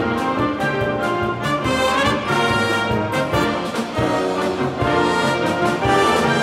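School wind band playing a pop-style concert band piece, brass to the fore over a steady drum beat.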